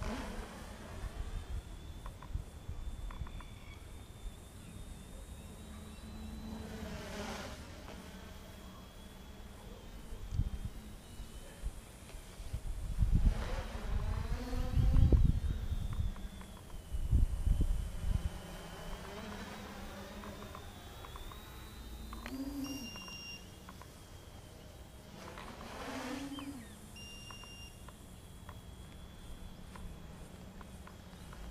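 Small electric multirotor drone flying overhead: a high, steady propeller buzz that wanders slightly in pitch as the throttle changes, swelling with a sweeping whoosh each time it passes close, about three times. Wind rumbles on the microphone in the middle.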